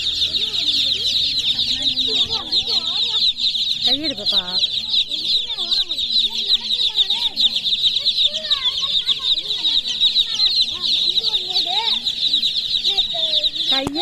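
A crowd of baby chicks peeping all at once: a dense, unbroken chorus of high-pitched cheeps, with faint voices underneath at times.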